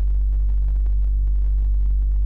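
A steady low electrical hum, a constant deep tone with a buzz of evenly spaced overtones, unchanging throughout, with faint scattered clicks.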